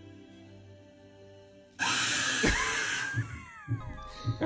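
Soft, calm music from a TV, then about two seconds in a sudden, loud jump-scare scream blares out, lasting about a second before trailing off into falling cries. This is the screamer at the end of a 'keep your eye on the car' prank commercial.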